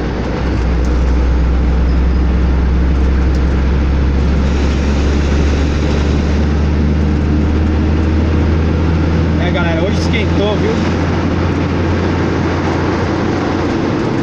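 Truck engine running at a steady speed, heard from inside the cab as a loud, even low drone mixed with road noise.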